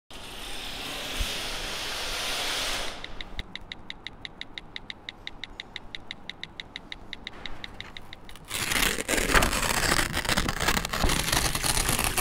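Sound effects in three parts. First a hiss that swells for about three seconds, then an even run of clicks at about six a second, then from about eight and a half seconds a louder, dense crackling and rustling.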